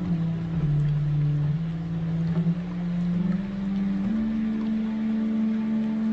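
Slow meditation music: long-held low notes that step slowly upward in pitch, over a soft steady drone.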